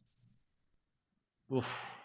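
Near silence, then about a second and a half in a man lets out a short, breathy "oof" sigh.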